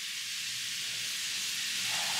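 Steady sizzling hiss of food frying in hot oil.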